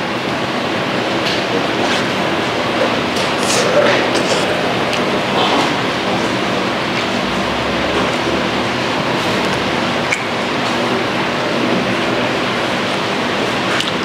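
A man chewing a mouthful of pizza, with a few faint mouth clicks, over steady, even background noise.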